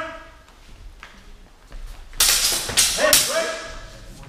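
Loud shouts, two or three in quick succession about two seconds in, echoing in a large sports hall.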